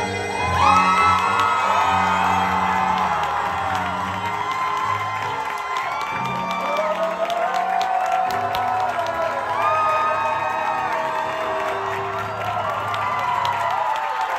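A male singer belting long, gliding notes into a microphone over an amplified backing track, with a crowd cheering and whooping along.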